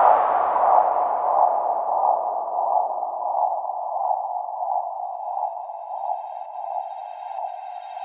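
Electronic music in a techno breakdown: the bass drops out and a wash of synth noise is filtered down over about four seconds into a narrow, steady whooshing band in the middle range, slowly fading. Faint high tones come in near the end.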